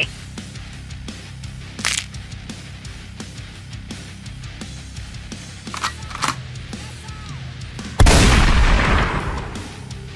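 Background music under battle sound effects: a few short hits, then a sudden loud explosion-like blast about eight seconds in that fades over a second and a half.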